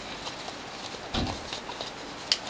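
Origami paper crinkling and crackling in short clicks as it is folded and pressed by hand, with one soft thump about a second in.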